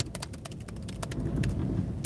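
Laptop keyboard keys tapped in irregular, scattered clicks, over a low steady rumble in the car cabin.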